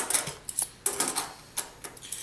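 Half-dollar coins clicking against each other as a stack of them is slid and fanned through the fingers: a quick, irregular run of small metallic clicks.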